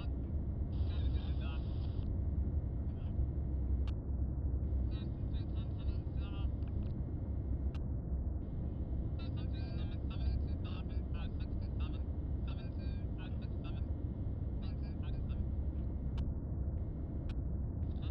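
A steady deep rumble runs throughout. Over it, faint, thin, unintelligible voices come and go.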